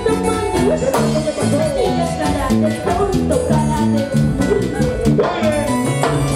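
Live band music playing loud with a steady dance beat, a repeating bass line and a lead melody that glides in pitch.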